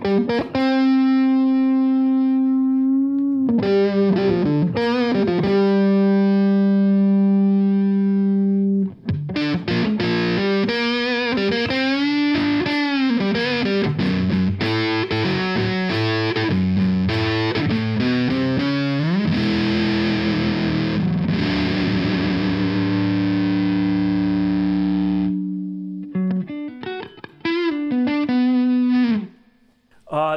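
Fender Stratocaster played through a fuzz pedal: long sustained distorted notes, with bends and vibrato and a busier run of notes in the middle. The last long note cuts off about 25 seconds in, and a few short phrases follow near the end.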